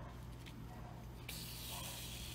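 Sewing thread drawn through grosgrain ribbon as a stitch is pulled tight: a brief hiss lasting under a second near the end, over a steady low hum.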